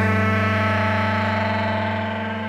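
Song music between sung lines: a held chord over a steady low bass note, ringing on and slowly fading.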